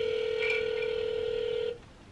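Telephone ringback tone through a smartphone's speaker: one steady ring of about two seconds that cuts off near the end, the sign that the outgoing call is ringing at the other end and not yet answered.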